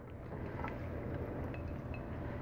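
Quiet low steady rumble of room noise, with a few faint soft sounds as a moist stuffing mixture slides out of a glass mixing bowl into a glass baking dish.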